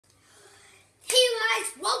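A child speaking, starting about halfway through after a faint, quiet first second.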